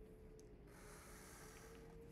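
Faint scratch of a black felt-tip marker drawn in one straight stroke across paper, lasting about a second in the second half.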